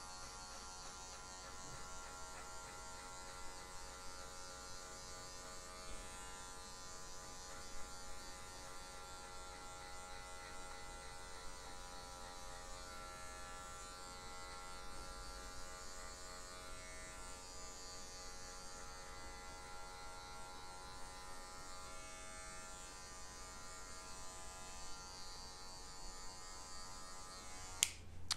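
Electric hair clipper fitted with a number 2 guard, running with a steady, faint buzz as it is worked through short hair to lighten the sides of a fade.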